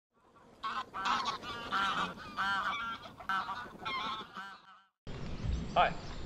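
Pinkfoot goose call (a flute-style hand call) blown in a rapid run of short, high-pitched honks, each bending up and down in pitch, imitating pink-footed geese. The calling stops short just before the end, and a man's voice begins.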